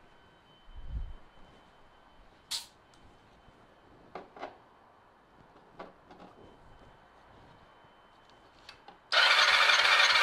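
Kawasaki ZR7 inline-four being cranked by its electric starter for a cold compression test, throttle held wide open and a compression gauge in a spark plug hole. The cranking starts suddenly near the end and runs loud and steady. Before it come a few faint clicks and a dull thump.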